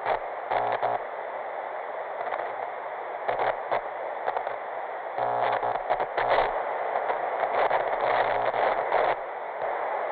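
Analog TV static: a steady hiss of noise that starts abruptly, broken by repeated louder buzzing glitch bursts with a low hum.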